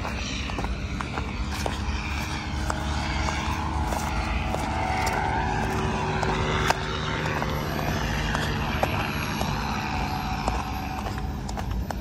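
Small model jet turbine still running on the ground after a crash, a steady whine that holds its pitch throughout.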